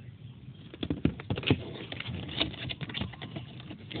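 Handling noise from a small cardboard pen box being turned over and its flap opened: a run of light irregular taps and scrapes, starting about a second in.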